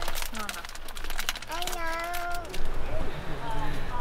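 A small child's voice inside a car, with one drawn-out vocal sound held for about a second near the middle, over scattered short taps and clicks.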